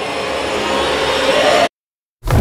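A rushing, wind-like noise that swells and then cuts off abruptly near the end, leaving dead silence.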